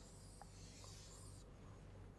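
Faint scratching of chalk on a blackboard as a long wavy curve is drawn in one continuous stroke, stopping about one and a half seconds in.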